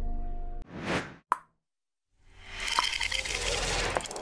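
Edited transition sound effects over the tail of background music: the music stops about half a second in, a short whoosh and a sharp click follow, then nearly a second of silence before a dense, noisy sound-effect bed swells up and holds.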